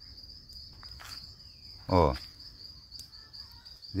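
Insects chirring in a steady, high-pitched continuous trill.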